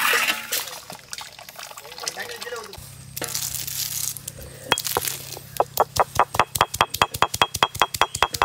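Green cardamom pods being crushed with a stone roller on a flat grinding stone: a fast, even run of sharp clicks, about five a second, through the second half. In the first second, a ladle stirs boondi in sugar syrup with a splashy liquid sound.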